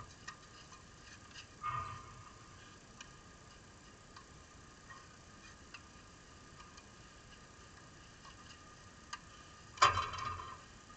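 Tennis balls being struck by rackets and bouncing on the clay court: scattered faint ticks, a louder knock with a short ring about two seconds in, and the loudest, sharpest knock just before the end.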